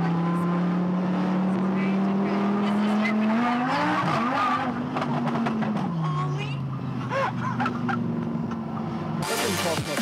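Lamborghini engine heard from inside the cabin, running steadily, then revving up about three and a half seconds in, holding a higher note and dropping back two seconds later, with passengers' voices over it. Music cuts in near the end.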